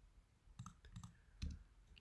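A few faint clicks of computer input, a mouse, trackpad or keys being pressed, between about half a second and a second and a half in, over near silence.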